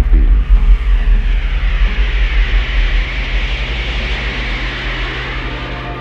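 Aircraft passing overhead: a rushing noise that swells to a peak about four seconds in and then fades, over a steady low hum.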